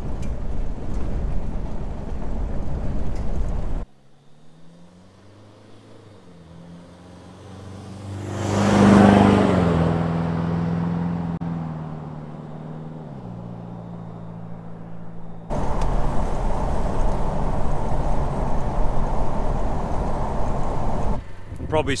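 Car road noise heard from inside the cabin, a steady rumble of tyres and engine on a gravel road. It cuts away to a car passing by outside, rising to its loudest about nine seconds in and fading as it drives off, then cuts back to the cabin rumble.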